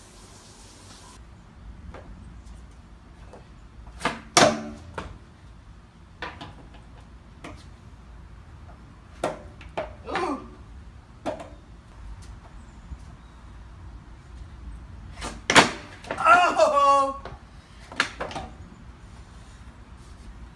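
Skateboard clacking on concrete during trick attempts: a series of sharp pops and board slaps, spaced irregularly, with a cluster of several close together about three quarters of the way through.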